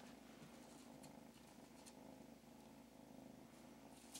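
Faint, steady purring of a kitten, with a few faint light ticks over it.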